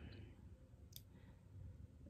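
Near silence: room tone, with a single faint click about halfway through.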